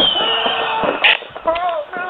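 Several voices talking over each other through a phone line.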